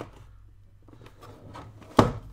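Giant plastic 3x3 Rubik's cube being twisted by hand: faint rubbing and handling of the stiff layers, ending in one sharp plastic clack near the end. The layers catch as they turn, which the owner puts down to small plastic burrs inside the cube.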